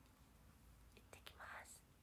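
Near silence, then a few soft clicks about a second in and a brief whisper from a young woman near the end.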